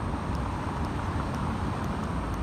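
Street traffic: the steady noise of cars driving past on a city road.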